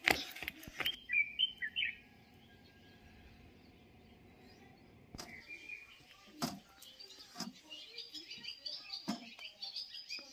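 Small birds chirping in short, quick notes, sparse at first and thickening through the second half, with a few light clicks and knocks in between.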